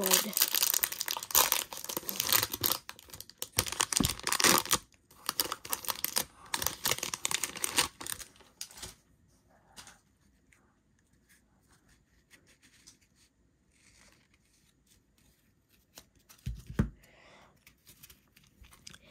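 A baseball card pack's foil wrapper torn open and crinkled by hand: a run of ripping and crackling over the first eight seconds or so, then quiet, with one soft thump near the end.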